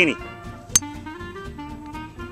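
A single sharp click about three quarters of a second in: a golf driver striking the ball off the tee. Jazz-style background music with guitar and saxophone plays throughout.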